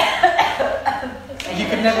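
A person coughing a few times, with talk around it.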